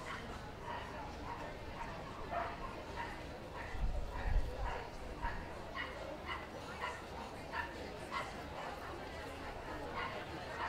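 Dogs barking and yapping repeatedly in the background, short irregular calls about one or two a second, over a murmur of voices. A brief low rumble comes about four seconds in.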